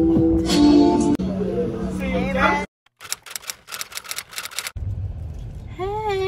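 Party music playing with people talking over it, cut off abruptly by a brief silence. A rapid series of sharp clicks follows, then a low car-cabin rumble.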